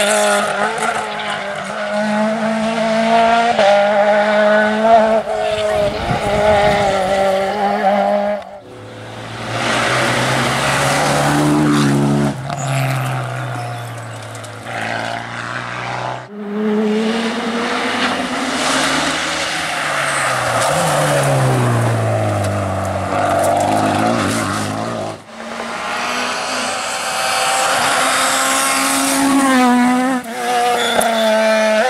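Rally cars at full throttle on a tarmac stage, engines revving high and dropping in pitch at each gear change, in a run of short clips that cut from one car to the next. Near the middle, one car's engine note falls steadily as it goes past.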